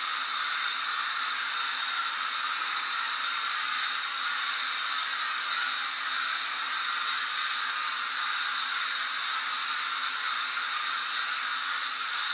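Aerosol can of disinfectant spray hissing steadily in one long continuous spray, coating the inside of a plastic dog kennel.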